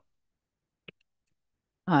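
Near silence broken by a single faint click about a second in, then a voice starts speaking near the end.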